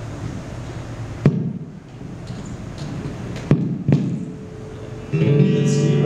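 Acoustic-electric guitar through a guitar amp while the dead signal is being sorted out: a few sharp pops, then a strummed chord rings out about five seconds in.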